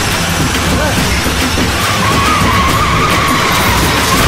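Force van skidding to a stop, its tyres giving a steady high squeal that starts about halfway through, over the rumble of its running engine.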